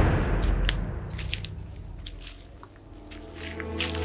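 Background score fading out, leaving insects and birds chirping in short repeated high pulses. The music swells back in near the end.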